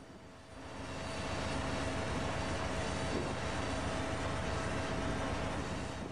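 Steady drone of an Amtrak diesel locomotive running while it is refuelled, with a faint steady hum through it; it swells up over the first second, then holds even.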